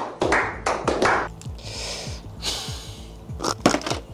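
A small group of people clapping, about five claps in the first second, then two short hissing bursts and a few sharp clicks over background music.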